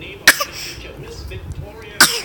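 A toddler's put-on, fake cough: one short, sharp cough about a quarter of a second in, and another beginning right at the end.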